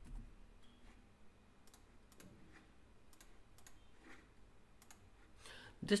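Faint, irregular clicks of a computer mouse, several spread over a few seconds. A man's voice begins right at the end.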